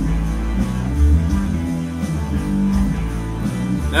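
Live rock band recording playing, guitar-led with bass and no vocals.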